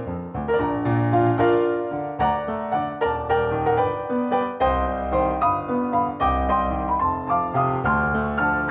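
Piano playing a ballet class accompaniment: struck chords and melody over a steady beat of about two notes a second, with a deeper bass line coming in about halfway through.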